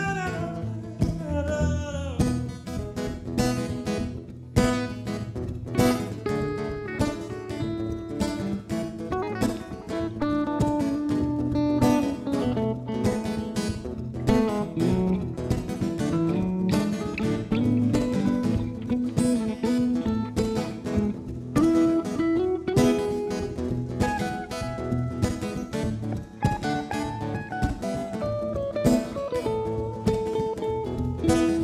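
Acoustic guitar strumming together with an electric guitar playing melodic lines: an instrumental passage of the song, with no singing.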